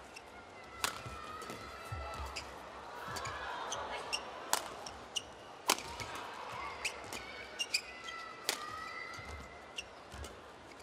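A badminton rally: rackets strike the shuttlecock with sharp cracks every second or so. Shoes squeak on the court mat in between, over the low murmur of an arena crowd.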